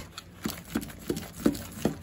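A sponge dauber dabbing paint through a stencil onto paper, about five soft taps roughly a third of a second apart.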